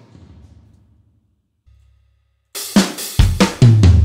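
Addictive Drums sampled drum kit playing back from Logic Pro. After about two and a half seconds of near silence, a quick run of drum hits with cymbals comes in and rings on.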